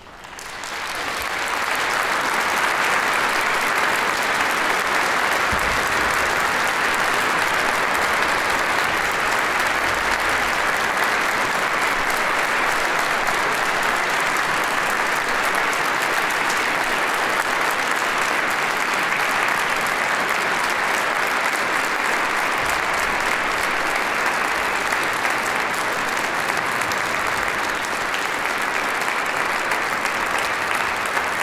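Audience applauding, the clapping swelling over the first couple of seconds and then holding steady.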